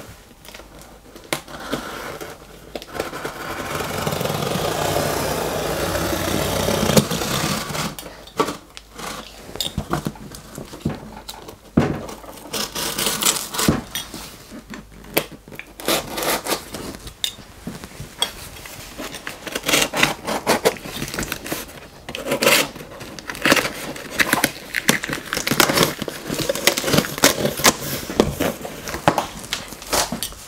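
Cardboard shipping box being cut open with a utility knife through its packing tape and cardboard. A long, steady scrape runs about three to seven seconds in, followed by many irregular scrapes, crackles and knocks as the cardboard is cut and the flaps are handled.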